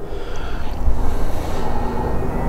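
Low, uneven rumble on the microphone with a faint steady hum underneath.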